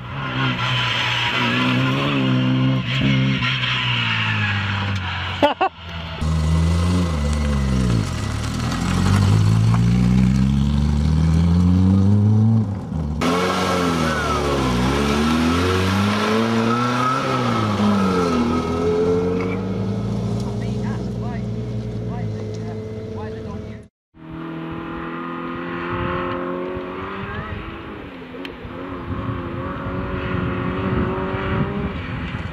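Small four-cylinder classic cars driving past one after another, each engine rising in pitch as it accelerates and dropping back at the gear changes. The sound cuts abruptly from one car to the next a few times.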